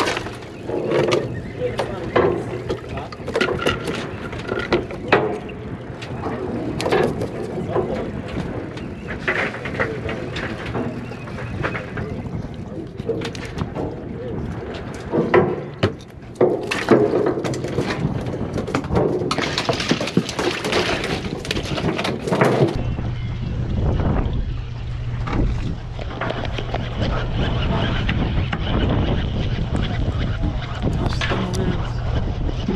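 Scattered knocks, slaps and rustles of freshly caught mackerel and a foam cooler lid being handled on a boat deck, over a low steady hum; about two-thirds of the way through this gives way to a steadier low drone of the boat's engine with wind.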